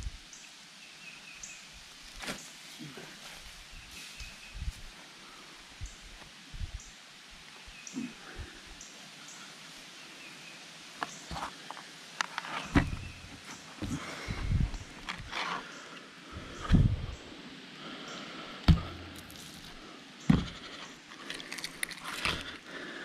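Wind buffeting the microphone in low gusts, with scattered clicks and rustles of a fish being handled on cardboard, busier in the second half. Faint short high chirps sound in the background.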